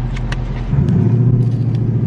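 Car engine heard from inside the cabin as the car speeds up suddenly: a deep, steady rumble that grows markedly louder about two-thirds of a second in and stays loud.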